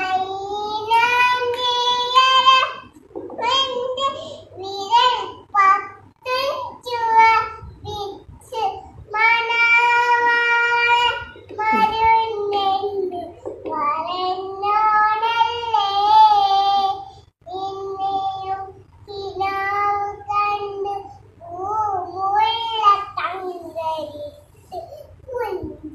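A little girl singing a song unaccompanied, in phrases with long held, wavering notes.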